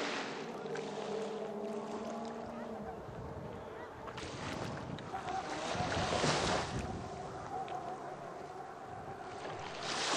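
Small waves washing onto a sandy beach in surges, the largest about six seconds in and another at the very end, with people talking in the background.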